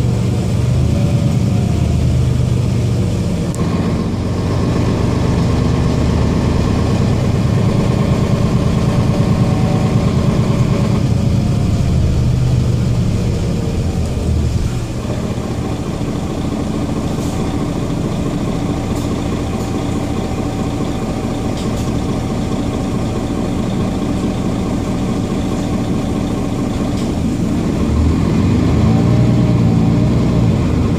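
Mercedes-Benz Citaro G articulated city bus heard from inside the passenger cabin, its diesel engine running steadily. A whine rises and falls briefly about a second in and again near the end, and a steady whine runs through the middle stretch.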